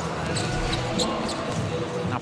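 A basketball bouncing a few times over the steady murmur of an indoor arena crowd.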